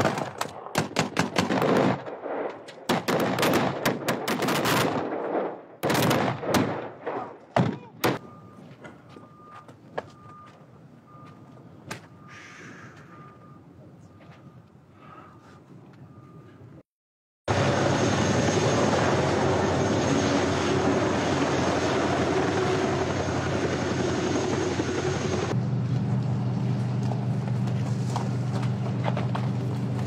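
Gunfire from rifles firing blanks on a film set: rapid bursts and single shots over the first eight seconds, thinning out. After that comes a steady, evenly repeating high beep. Then, after a short break, a loud steady noise with a low hum runs to the end, its low tone changing about three-quarters of the way through.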